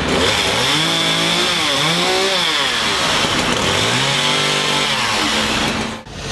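Petrol chainsaw running at high revs while cutting back tree branches. Its pitch drops and climbs again several times as it works.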